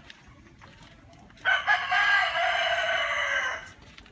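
A rooster crowing once: a single long call of about two seconds that starts about a second and a half in and drops slightly in pitch as it ends.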